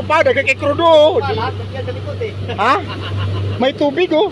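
An outboard motor running at speed, a steady low drone under excited voices and shouts, with a rising whoop about two and a half seconds in. The drone drops away briefly near the end.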